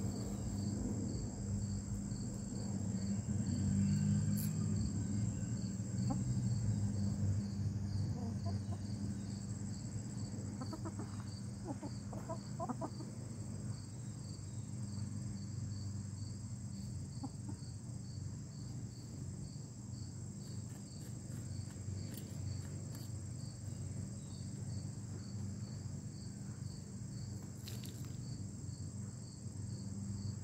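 Hens clucking low and softly, with a short run of clearer clucks about eleven to thirteen seconds in, over steady, evenly pulsing insect chirping.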